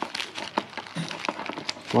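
Light clicks and rustling as a grey plastic multi-pin wiring connector is handled and pushed together with its mating plug on a wiring loom.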